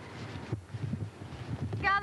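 Uneven low rumble of a camcorder being handled while walking, with a brief knock about half a second in. A person's voice starts near the end.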